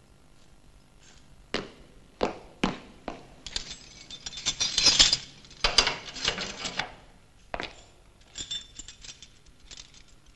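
Four sharp knocks or clicks a little over half a second apart, then a dense run of rapid clattering for about three seconds, one more click, and lighter clattering near the end.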